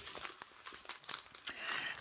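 Faint, scattered crinkling of small plastic zip bags of diamond painting drills being handled.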